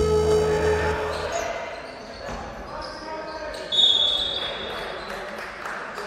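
Basketball game in a large echoing gym: a ball bouncing on the hardwood court and players' voices. A short, high, steady tone sounds about two-thirds of the way through.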